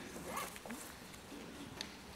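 Sheets of paper rustling as they are handled and turned over, with a short click near the end.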